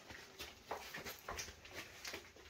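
Faint handling and movement noises: a few soft knocks and rustles as a person shifts about in a small room.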